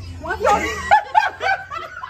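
A person laughing loudly in a run of short, quick laughs.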